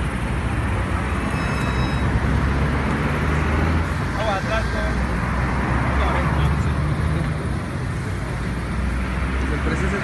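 Steady road traffic noise from vehicles on a busy highway, a continuous low rumble with no single event standing out.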